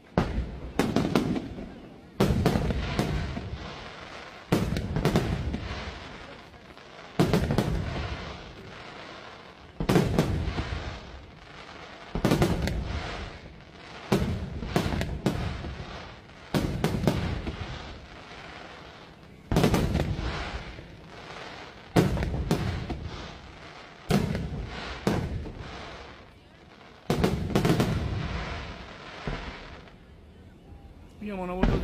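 Aerial firework shells bursting overhead in a steady series, a sharp bang every one to three seconds, each followed by a long echoing rumble that fades before the next.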